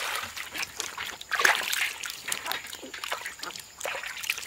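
Water poured from a metal pot into a stainless steel basin holding a ham leg, then splashing and sloshing in the basin as the ham is rubbed and washed by hand. The strongest splashes come about a second and a half in.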